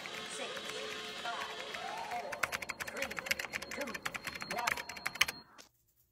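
Rapid typing on a computer keyboard, a quick run of key clicks over a background of indistinct voices. The whole soundtrack cuts off abruptly to near silence about half a second before the end.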